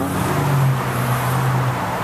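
Steady road traffic noise with a low engine hum that swells for most of the two seconds.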